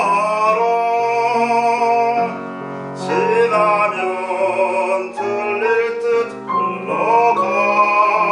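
A baritone singing a Korean art song with grand piano accompaniment, holding long notes with vibrato. The voice breaks off briefly twice, after about two seconds and again after about six.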